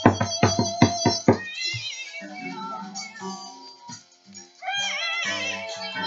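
Acoustic guitar strummed hard in rapid strokes for the first second and a half, then a man singing in a high, wavering voice over lighter guitar.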